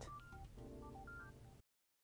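Faint background music of short, plain electronic tones stepping between pitches over a soft held chord. It cuts off to total silence about a second and a half in.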